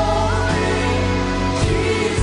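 Live worship band playing a contemporary Christian worship song: singers with a choir behind them over electric guitars, keyboard and a steady bass.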